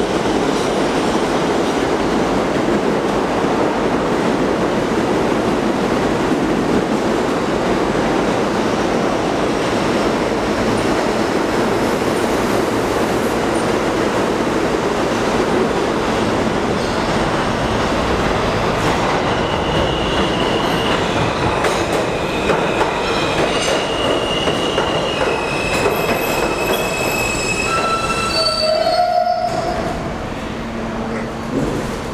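New York City subway trains running through an underground station: a loud, steady rumble of wheels on rails. From about two-thirds of the way in, the wheels squeal in several high, steady pitches that keep breaking off and changing.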